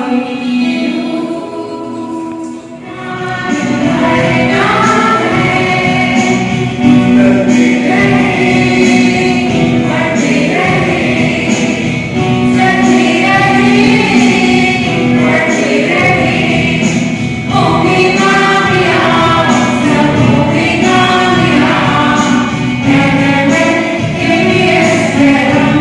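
A group of voices singing a song together, over a steady held accompaniment tone and a regular beat. It starts softer and comes up to full level about three seconds in.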